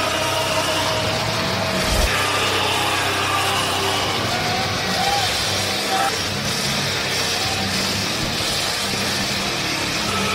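Arena crowd noise: a steady din of many voices cheering and shouting, with a low hum underneath.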